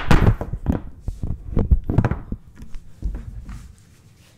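Handling noise from a camera being grabbed, moved and set down: a run of knocks and thumps, loudest in the first two seconds, fading out near the end.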